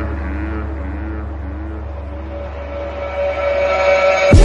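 Quiet breakdown of an electronic music track: a sustained deep bass drone with a slowly wavering higher tone, swelling in loudness in the last second before the beat drops.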